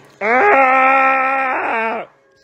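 A pit bull-type dog giving one long moaning howl, starting about a quarter second in and held steadily for nearly two seconds before it wavers and stops.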